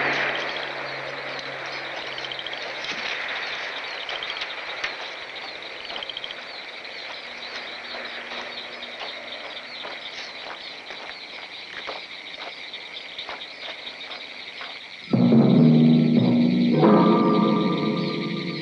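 A steady high chirping outdoor ambience with scattered faint knocks. About fifteen seconds in, loud film soundtrack music bursts in suddenly with held, ominous chords.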